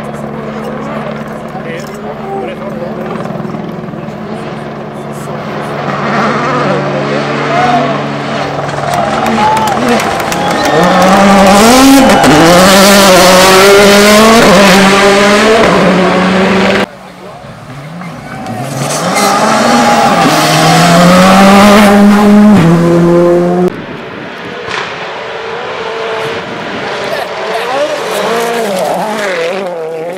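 Rally cars at full speed on a gravel stage, engines revving up and down through the gears as they pass close by. There are two loud passes, and each one cuts off suddenly.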